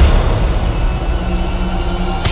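Low, steady rumbling drone of a horror trailer's soundtrack, with faint held tones over it, opening on a sharp hit.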